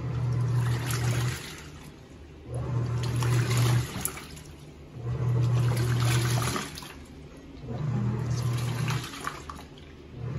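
American Home 6 kg top-load washing machine agitating a load of clothes in water: the motor hums in four bursts of about a second and a half, with water sloshing, pausing about a second between bursts as the pulsator reverses direction.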